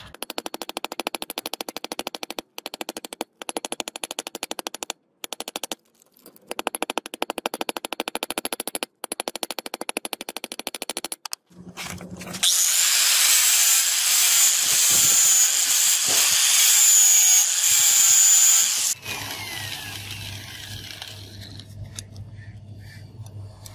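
A rapid, even buzzing rattle that stops and starts several times, then, from about halfway, a loud scratchy rubbing as paper is worked along the polished steel blade for about six seconds, followed by a quieter low hum.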